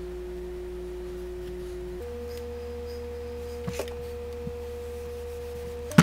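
Held electronic sine-like tones, one steady note at a time, stepping up to a higher note about two seconds in and again at the very end. A few faint clicks come near the middle.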